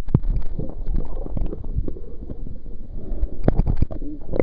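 A camera plunging underwater with a sharp splash, after which everything turns muffled. What follows is a low churning rumble of water against the camera housing, with a scatter of small clicks and knocks that cluster near the end.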